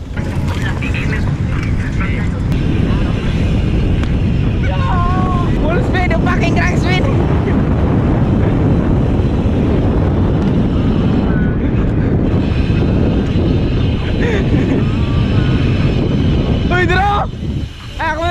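Heavy wind buffeting on an action camera's microphone as it moves along with a BMX rider: a loud, steady rumble. Voices call out briefly about five to seven seconds in and again near the end.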